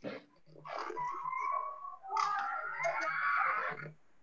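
Distant voices screaming and shouting in a replayed phone video of a crowd, heard through a video call. There are two wavering, drawn-out cries, the second beginning about two seconds in.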